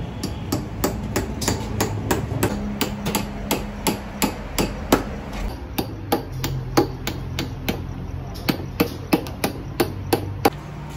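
A large metal cooking-oil tin being cut open, a cleaver hammering a knife blade through the tin's lid: a steady run of sharp metallic knocks, about three a second.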